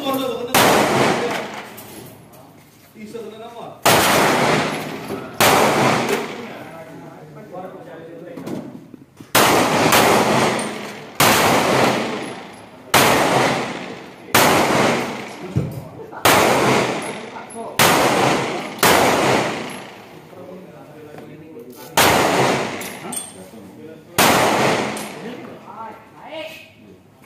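Pistol shots fired one at a time, about thirteen of them at irregular intervals of roughly one to four seconds. Each crack is followed by a short echoing tail.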